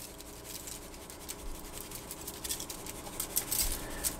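Garlic salt shaken from a plastic shaker onto catfish fillets in a foil-lined tray: a light patter of quick, faint ticks that grows busier in the second half, over a faint steady hum.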